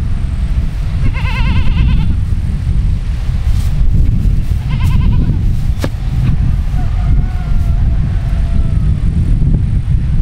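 An animal bleats twice with a wavering, quavering call, about a second in and again about five seconds in. A steady low wind rumble on the microphone runs underneath, with a sharp click a little before six seconds.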